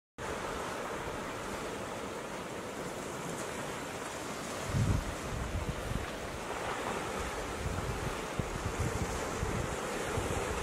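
Ocean waves washing in a steady hiss, cutting in suddenly from silence at the start, with a louder surge about five seconds in.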